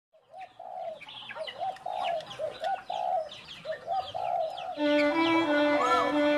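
Birds calling: a run of repeated short low calls with quick high chirps over them. About five seconds in, music with long held notes comes in.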